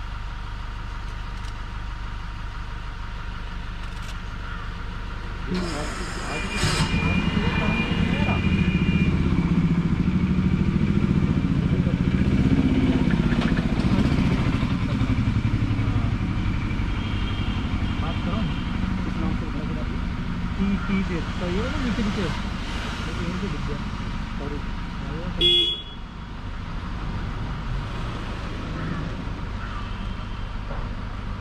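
Car engine idling with a steady low hum, growing louder for several seconds from about six seconds in, and a short horn toot a few seconds before the end.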